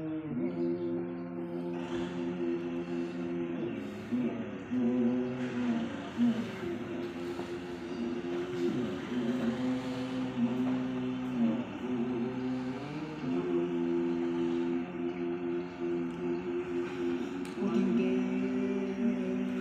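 Bowed string instrument playing a slow melody of long held notes, sliding between pitches as the notes change.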